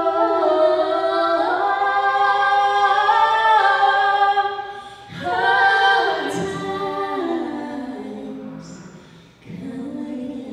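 Two women singing a folk song together without accompaniment, holding long notes. The singing drops away briefly about five seconds in, fades towards the end, and a new phrase starts just before it ends.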